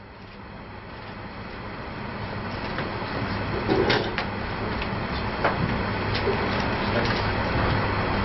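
A steady low rumbling noise with a faint hum, growing gradually louder, with a few light knocks.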